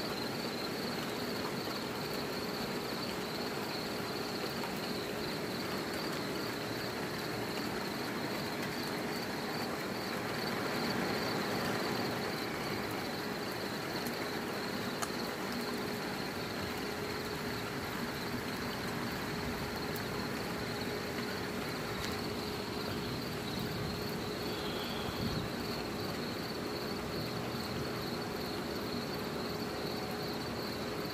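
Crickets chirping in a steady high-pitched night chorus, with a steady low hum and faint hiss underneath.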